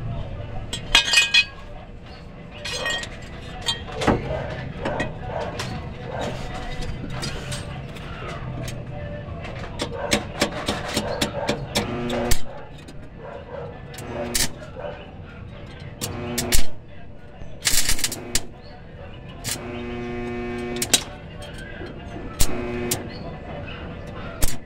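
Short bursts of crackling from an arc (stick) welder tacking a steel bracket to the van's underside, among sharp metallic clicks and knocks. Music and voices play in the background, with short repeated pitched tones in the second half.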